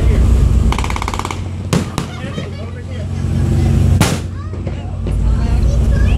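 Cannon shots: two sharp reports about two seconds in and a louder booming one about four seconds in, over the steady low drone of a boat's engine. A short buzzing tone sounds about a second in.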